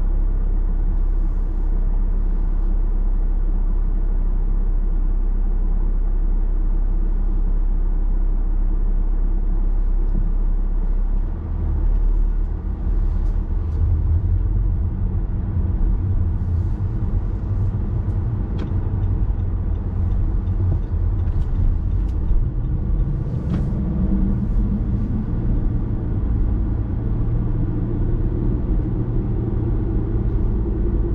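Car running, recorded inside the cabin: a steady low hum while it stands, then it moves off about a third of the way in, and engine and tyre noise build as it drives along the road.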